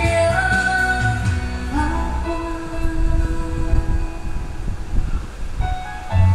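Pop ballad played from a backing track, with a woman singing live into a microphone over it and holding a note in the first couple of seconds. After that the accompaniment carries on with lighter bass.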